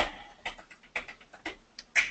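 A run of sharp ticking clicks, about eight at uneven spacing, the loudest at the start and at the end: sound effects on the soundtrack of an animated explainer video.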